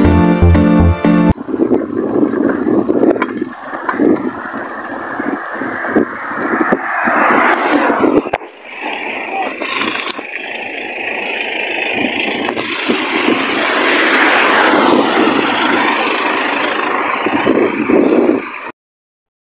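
Background music with a steady beat cuts off about a second in. It gives way to the rushing, wavering noise of a bicycle being ridden on the road, with wind and tyre noise on the microphone.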